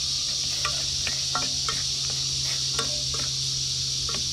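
A metal ladle stirring snails in their shells in a steel pot, with irregular clinks and scrapes of metal and shell. A steady high drone of insects runs underneath.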